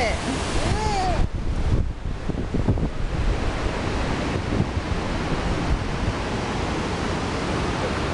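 Steady rush of river water spilling over a low weir, with wind buffeting the microphone.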